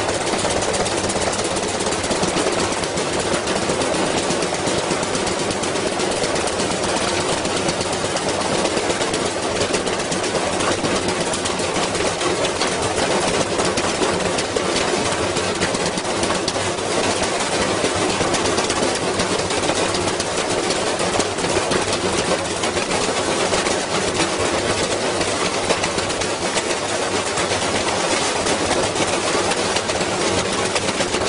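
Front-loading washing machine spinning hard with a heavy object loose in its drum: a steady, dense clatter of the load banging around and the cabinet rattling as the badly unbalanced machine shakes itself apart.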